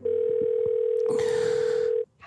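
Steady single-pitched telephone tone while a call is connecting. A hiss joins about a second in, and the tone cuts off suddenly as the call is answered.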